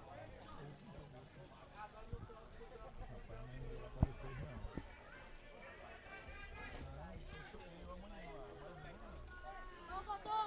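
Faint, distant voices of players and people around the pitch calling out, over a low steady hum, with a single sharp knock about four seconds in.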